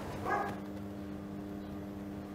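A brief voiced sound about a third of a second in, then a faint held chord of soft background music that runs on quietly.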